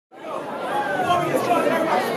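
Many people talking at once: audience chatter, with no single voice standing out.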